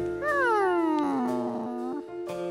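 A cartoon monkey's voice gives one long cry of surprise that jumps up briefly, then slides down in pitch and is held low, over steady background music.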